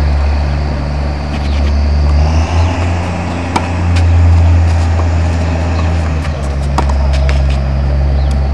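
Tennis balls struck with rackets during a rally on a clay court: sharp knocks about three and a half and about seven seconds in, over a steady loud low rumble.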